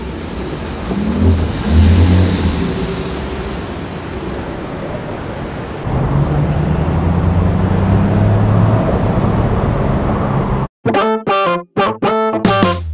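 A car engine running low under a steady hiss of road noise, with a few short swells in the low hum. Near the end it cuts off abruptly and a different piece of music starts in choppy bursts.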